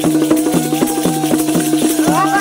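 Bundeli Rai folk music: a hand drum beating quick, even strokes with rattling jingles, over a held melodic line that wavers slightly in pitch.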